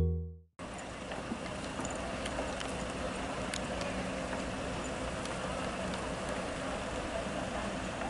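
Piano intro music cuts off in the first half-second. After a brief silence comes steady outdoor urban background noise, a low hum and hiss with a few faint ticks.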